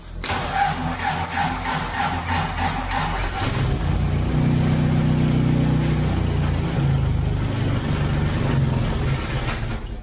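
Austin-Healey engine cranked by its starter motor for about three and a half seconds, then catching and running steadily. This is its first start since the engine was refitted to the car.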